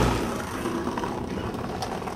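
Outdoor street ambience picked up by the camcorder's microphone, noisy and without a clear beat, fading steadily.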